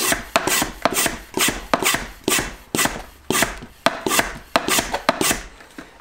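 Hand plunger pump of an Oregon 88-400 lube-oil extractor being worked in quick strokes, a rasping whoosh about four times a second, building vacuum in the tank to draw the last engine oil out through the dipstick tube. The pumping stops a little before the end.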